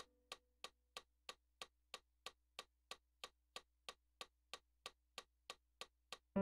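Faint metronome clicking at a steady, fairly quick pace of about three clicks a second.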